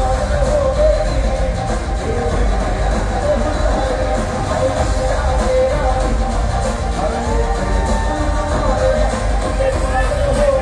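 Live Punjabi pop music played loud over a concert PA, a singer with a band over heavy, steady bass.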